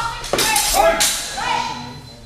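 Steel training swords clashing in a fencing exchange, about three sharp strikes (at the start, about a third of a second in and about a second in), with shouting between them and a thin ringing that hangs on after the last strike.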